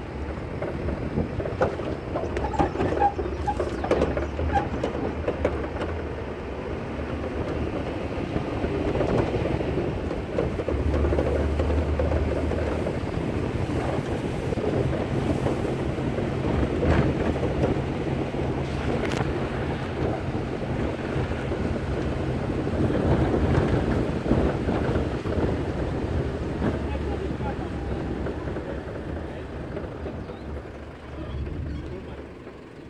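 Pickup truck driving over a rough dirt farm track, heard from the open load bed: a low engine drone under wind buffeting the microphone, with scattered knocks and rattles from the bumps.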